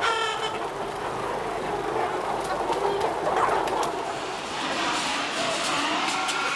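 Dense din of a crowded barn of hens clucking and calling all at once, with a louder single call right at the start.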